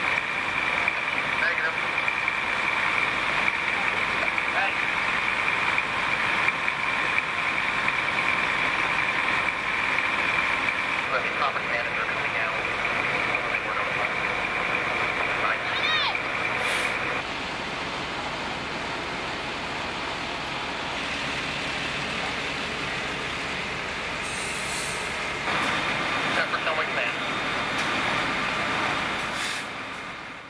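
Fire trucks running at the scene, their engines making a steady noise with a high whine over it that stops abruptly about 17 seconds in. A louder stretch of the same engine noise comes near the end.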